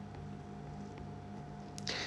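Quiet, steady low hum with a faint thin whine above it. A breath and the start of a spoken word come near the end.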